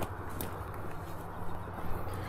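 Footsteps down a muddy, slippery bank through low scrub: a few soft steps and rustles over a low steady rumble.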